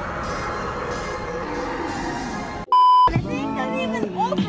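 Background music, cut off about two and a half seconds in by a short, loud, steady bleep tone lasting about a third of a second, followed by a voice.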